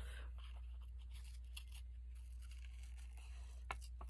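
Faint snips and rustles of scissors cutting into a paper doll cutout, with one sharper click near the end.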